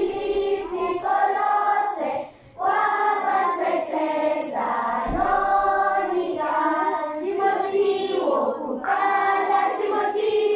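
A group of children singing a song together, a brief break about two seconds in.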